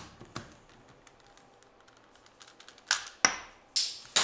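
A screwdriver prying at the plastic pieces of a Rubik's Cube: faint scraping ticks, then three sharp plastic clicks in the last second and a bit.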